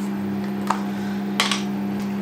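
Steady electrical hum of a microwave oven running, with two light clinks of kitchen utensils against a glass bowl, about a third and two-thirds of the way through.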